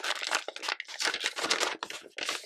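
Clear plastic sleeves and sticker sheets crinkling and rustling as they are handled and slid apart, in an irregular run of crackles.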